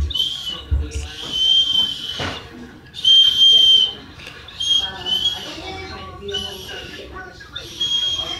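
A small toy whistle blown in about six separate toots, each a steady high tone; the longest lasts about a second, starting just over a second in, and the loudest comes about three seconds in.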